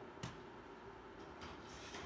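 Quiet handling noise of parts on a workbench: a light click a little way in, then faint rubbing and shuffling.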